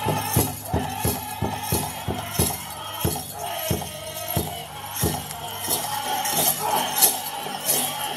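Powwow drum group playing a grass dance song: a large drum struck in a steady beat about three times a second, under high-pitched group singing.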